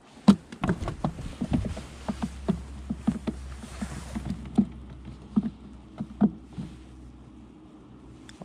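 Irregular light knocks and clicks of hands handling fish and tackle in a small boat, the loudest about a third of a second in, over a low steady hum that stops about four and a half seconds in.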